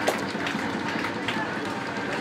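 Distant voices of players and spectators at an open-air football pitch, faint calls and chatter over a steady background hiss, with a short click at the very start.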